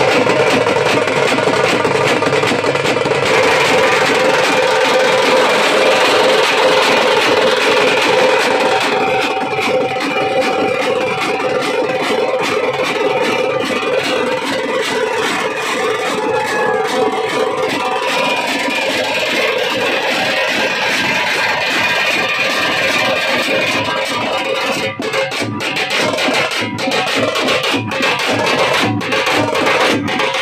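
Live Veeragase dance accompaniment: several drums beaten fast and continuously with sticks, under a held, wavering melody line.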